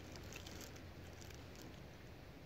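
Almost silent: faint, steady outdoor background noise with a low hum and a few faint ticks.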